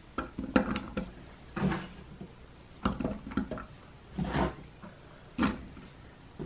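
Raw carrot sticks dropped by hand into a slow cooker's crock onto sliced potatoes. They make a string of about eight short, irregular knocks and clatters.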